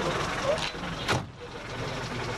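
Noise inside a car with faint voices from outside, and one sharp knock about a second in, after which the sound becomes quieter and duller.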